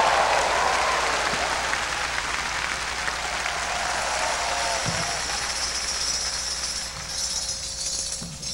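Large crowd applauding, the applause slowly dying down; near the end a tambourine starts jingling as a percussion solo begins.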